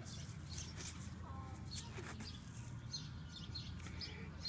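Faint bird chirps in the background, short and high, scattered through, over a low steady hum.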